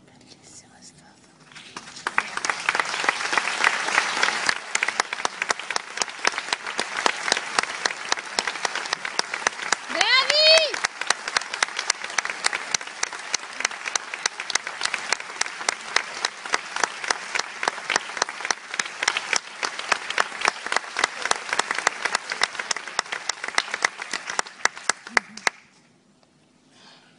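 Theatre audience applauding with cheers, starting about two seconds in and loudest at first, with one rising call from the crowd about ten seconds in; the clapping stops suddenly just before the end.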